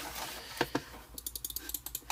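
Mouse buttons of a Logitech M560 wireless mouse being clicked: two single clicks, then a quick run of clicks in the second half.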